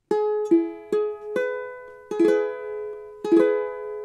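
A ukulele playing an E-flat major chord: four single notes plucked one after another about half a second apart, then the full chord strummed twice and left to ring out.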